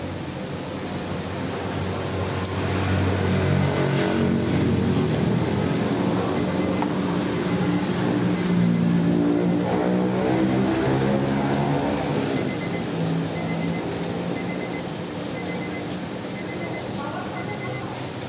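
A motor vehicle's engine passing close by, growing louder from about two seconds in and its pitch sliding downward as it fades after about ten seconds.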